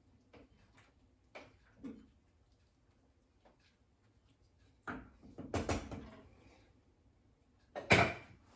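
Faint clinks of a metal spoon stirring in a stew pot on an electric stove, then a short run of sharper knocks and clatter about five seconds in, and one loud knock near the end, as kitchen utensils are handled and set down on the counter.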